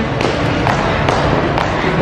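Footsteps going down hard station stairs, a few light knocks about every half second, over a steady background din.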